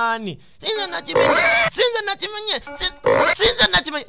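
Voices mixed with music, with two harsh, noisy stretches about a second and about three seconds in.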